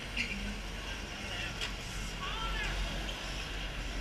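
Outdoor track ambience: a low steady rumble with faint voices in the background, and a sharp click about one and a half seconds in.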